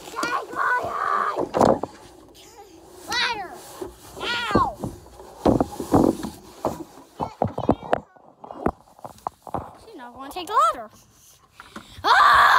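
Children's high-pitched calls and squeals, muffled, amid rustling and knocking as jacket fabric rubs against the microphone.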